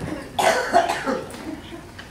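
A person gives a short cough about half a second in.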